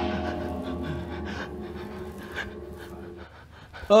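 A person panting heavily in quick, short breaths over a fading low musical drone that stops a little over three seconds in. A short, loud cry of "ay" comes right at the end.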